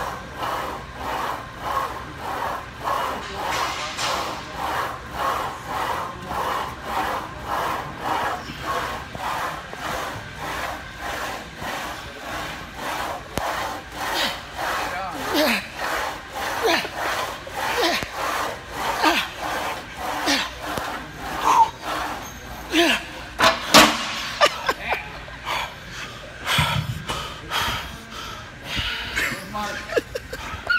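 A man panting hard and rhythmically, about two breaths a second, worn out after a long leg-press drop set. Voices and laughing-like sounds come in about halfway through.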